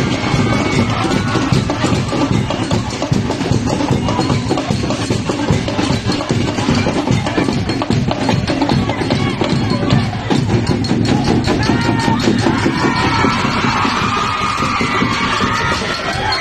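Drum-cheer percussion: quick, steady drumming with music under it, and crowd voices shouting and cheering over it in the last few seconds.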